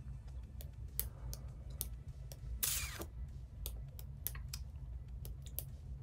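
Scattered light clicks and taps from handling things on a tabletop game, with a brief swish about two and a half seconds in, over a faint steady low hum.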